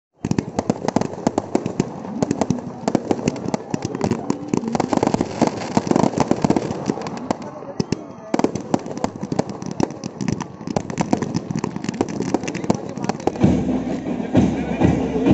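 Fireworks crackling and popping in rapid, dense volleys, with a brief lull about eight seconds in.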